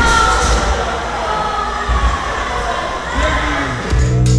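Roller coaster riders cheering and shouting as the train rolls into the station, over a steady low rumble from the train.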